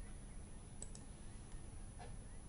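Faint background hiss, with two soft clicks close together a little under a second in.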